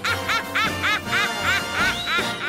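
A high, nasal cartoon-style voice repeating a quick rising-and-falling syllable, about five times a second, over music.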